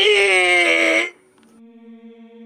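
A voice holding one loud, high cry that cuts off about a second in, followed by a faint steady hum of two low sustained tones.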